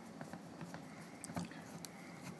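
Faint, scattered small clicks and rubbing of hard plastic parts as a screw is turned by hand to fasten a Blackhawk Serpa holster to its paddle mount.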